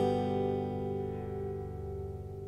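A G major chord on an acoustic guitar, strummed once just before and left ringing, slowly fading.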